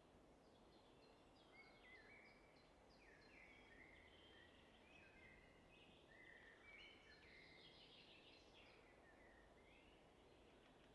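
Near silence, with faint bird calls: short, high whistled notes and slides scattered throughout.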